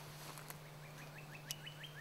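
A bird calling a quick series of short rising chirps, about eight a second, starting about a second in. Two sharp clicks come about half a second and a second and a half in.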